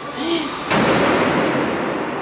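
Fiat Toro pickup hitting a rigid concrete barrier head-on at about 48 km/h in a frontal crash test: a sudden loud crash of the body crumpling about three-quarters of a second in, followed by a long noisy tail that slowly dies away.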